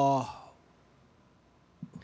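The end of a man's long, steady hesitation 'uhh' into a microphone, fading out about a quarter second in, followed by a pause before he starts speaking again.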